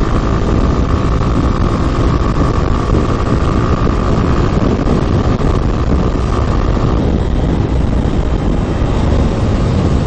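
Motorcycle riding at around 100 km/h: steady engine and road noise under heavy wind rush on the microphone, with a steady whine that drops away about seven seconds in.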